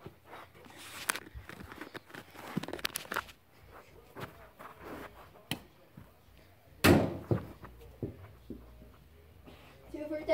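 Scattered thumps and knocks from a child moving and handling balls in a carpeted room. One loud thump comes about seven seconds in.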